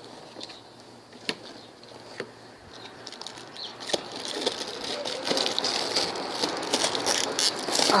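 A cardboard box being opened by hand and its plastic wrap handled: a few sharp clicks and rustles at first, then from about four seconds in a steadier, louder crinkling of plastic film as the flaps open.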